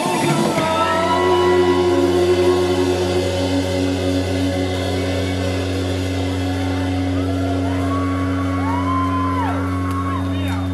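Live synth-pop/indie rock band: the singing breaks off just at the start and the band sustains a steady held chord over a low bass note. Near the end a voice rises and falls over it in a few long gliding notes.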